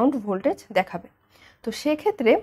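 Only speech: a lecturer talking in Bangla, with a brief pause in the middle.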